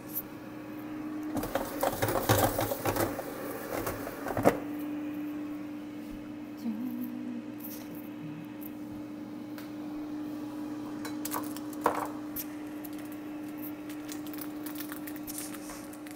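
A steady electrical hum from a kitchen appliance, with a burst of handling clatter between about one and four seconds in that ends in a sharp click, and another click near the end.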